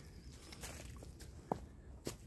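A hiker's faint footsteps through the woods, with one sharper click about one and a half seconds in.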